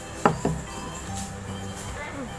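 A ceramic plate of rice set down on a wooden table: two sharp knocks close together about a quarter-second in, over background music.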